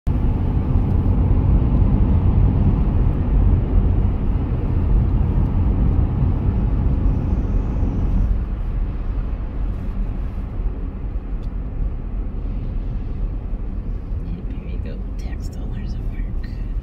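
Road noise heard inside a moving car's cabin: a steady low rumble of tyres and engine, dropping in level about halfway through.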